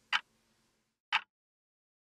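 Clock ticking once a second, two short ticks with silence between them.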